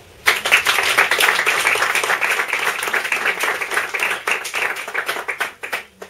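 Small audience applauding. The clapping starts suddenly, stays dense, then thins to a few last separate claps near the end.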